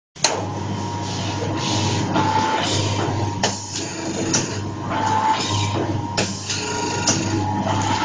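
Automatic powder bag-packing machine with a screw auger filler running: a steady motor hum with a sharp clack every second or two as it cycles.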